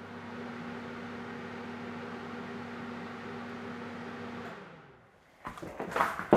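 Home-made dyno's coil-wound electric motor spinning its rotor on the bench: a steady hum with a single tone that dies away about four and a half seconds in. A clatter starts just before the end.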